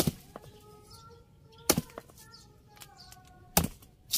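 Three sharp chopping strikes of a machete into the trunk of a potted Japanese papaya tree, roughly two seconds apart.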